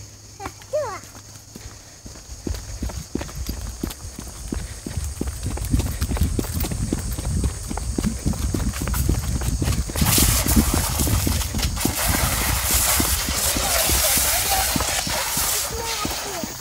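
Rhythmic footfalls of someone jogging on a concrete path, a steady run of thuds. From about ten seconds in, a loud hiss rises over the steps.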